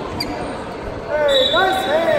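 Shoe soles squeaking: a cluster of short, quickly gliding squeaks about a second in, over the steady chatter of people in a large gym.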